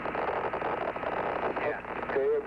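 Steady hiss of radio static on the Apollo spacecraft's air-to-ground voice link, held to the narrow, telephone-like band of the channel, with a faint steady tone in it.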